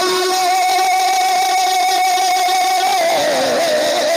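A man's voice singing an Urdu devotional naat (manqabat) into a microphone. He holds one long high note for about three seconds, then breaks into a wavering, falling run of notes.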